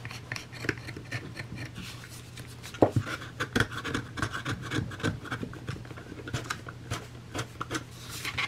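Utility knife blade scraping and shaving loose fibres from around holes bored in a thick book cover board: a continuous run of short scratchy scrapes.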